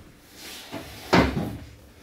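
A single loud knock of furniture, a chair bumped against the table, a little over a second in, with faint shuffling around it.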